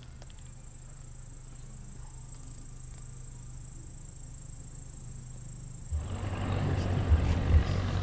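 Field insects chirring in one steady high-pitched drone. About six seconds in, a louder, fuller rushing noise with low rumbles joins it.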